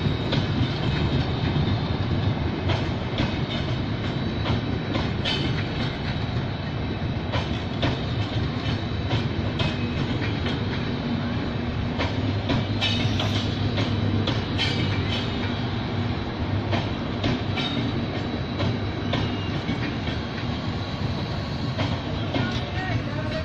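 Passenger coaches of an express train rolling past close by: a steady rumble of wheels on rail, with irregular sharp clicks and clacks as the wheels cross rail joints.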